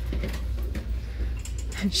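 Light clicks and small knocks of ceramic mugs being handled on wire shelving, over a low steady hum of store background with faint voices.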